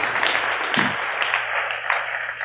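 Congregation applauding, many hands clapping steadily.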